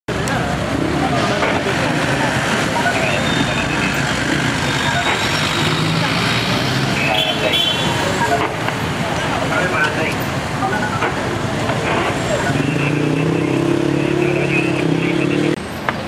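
City street traffic: car and motorcycle engines running close by, with people talking. Near the end a steady engine note holds for about three seconds and cuts off suddenly.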